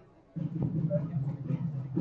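Restaurant background noise: a steady low hum with faint clatter. It cuts in abruptly after a brief dropout at the very start.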